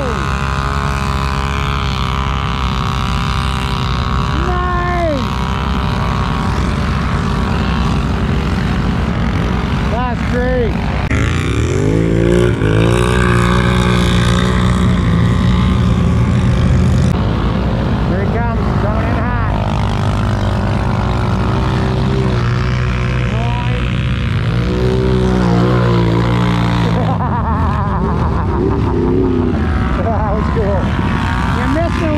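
ATV engines revving hard in deep mud, pitch climbing and falling in repeated surges. The longest, loudest pulls come about a third of the way in and again past the three-quarter mark.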